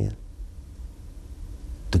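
A man's accented voice in a sit-down interview: one word at the start and another at the very end. Between them is a pause of about a second and a half in which only a low steady hum is heard.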